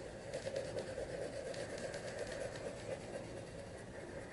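A gray crayon rubbing on paper as it is scribbled over a drawing in small loops: a faint, steady scratchy shading sound.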